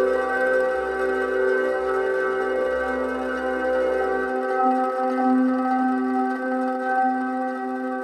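Ambient meditation music of sustained, ringing tones, like singing bowls, held steady. A low drone underneath drops out a little past halfway.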